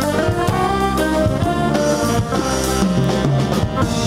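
A live jazz ensemble of saxophones, trumpets and drum kit plays a Caribbean jazz piece that blends gwoka and bèlè with modern instruments. The horns play held melodic lines over steady drumming.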